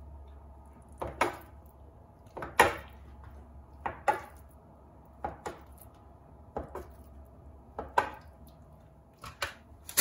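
Metal bench scraper chopping down through a rolled dough log and knocking on the countertop: about seven sharp cuts, roughly one every second and a half, some landing as quick double knocks.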